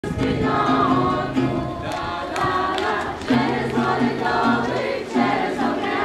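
A group of voices, mostly children, singing a hayivka, a Ukrainian Easter round-dance song, in unison to a strummed acoustic guitar.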